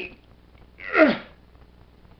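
A single short vocal sound from a person, about a second in, with a breathy start and a falling pitch.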